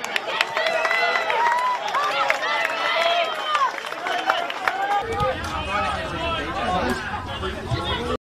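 Many voices shouting and calling at once across a football pitch, players and onlookers overlapping, with scattered sharp knocks. A low rumble joins about five seconds in.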